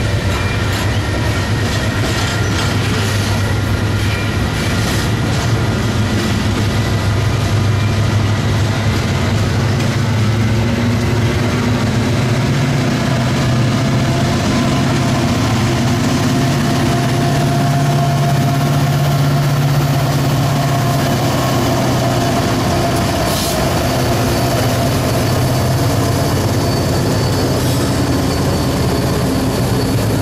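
Union Pacific freight train passing: hopper cars roll by with steady wheel-on-rail noise. Partway through, the diesel locomotives at the rear of the train go past, and their engine hum grows, then eases off as they roll away.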